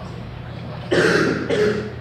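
A man clearing his throat: a short, rough, cough-like burst about a second in, followed by a brief voiced grunt.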